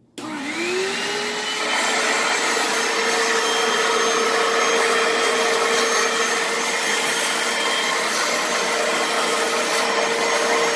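Portable carpet and upholstery cleaner switched on and running, its motor whine rising in pitch as it spins up during the first second or two, then holding steady while the nozzle is worked over cloth upholstery.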